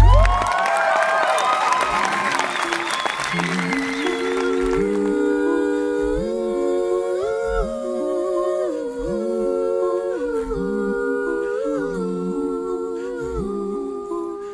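Several layered voices humming a cappella in sustained, choir-like chords that shift every second or so. At the start they are mixed with a noisy wash and swooping vocal glides that fade out four to five seconds in.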